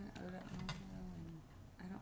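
A person's voice, low and murmured, for the first second and a half, with a couple of light clicks.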